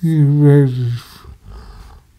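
A man's voice: one drawn-out word or hesitation sound lasting about a second, falling slightly in pitch, then a pause.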